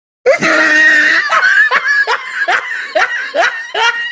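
A person laughing loudly in a high voice: one long shrieking laugh, then a string of short rising "ha" bursts, about two or three a second.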